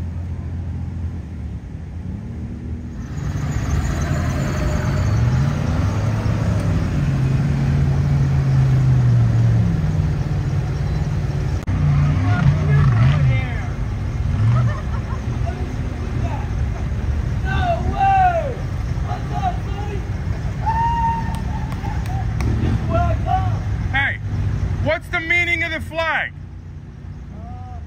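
A vehicle engine running close by, its pitch rising about three seconds in and wandering for several seconds before settling to a steady low hum. Scattered voices talk over it.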